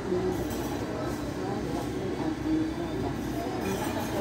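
A steady low rumbling noise with faint, indistinct voices over it.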